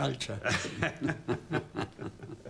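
A man speaking briefly, then chuckling in a run of short laughs.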